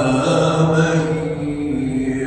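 A man reciting the Quran in a melodic chant into a microphone, holding long drawn-out notes that step slightly up and down in pitch.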